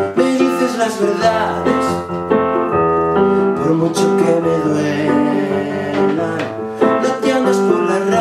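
A man singing while accompanying himself on a Nord Electro 2 stage keyboard, playing sustained piano-type chords under the vocal line.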